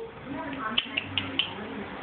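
A dog walking on a hardwood floor: four light clicks about a second in, from its claws and collar tags as it steps.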